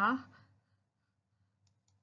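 A woman's narrating voice trails off about half a second in, followed by a pause of near silence with two faint clicks close together near the end.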